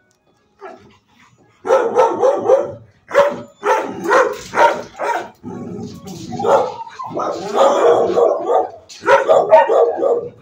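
Dogs in shelter kennels barking: near silence for the first second and a half, then a quick run of repeated barks that carries on to the end, crowding together in the second half.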